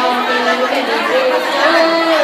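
Several voices singing held, stepping notes, with people talking over the singing in a large room.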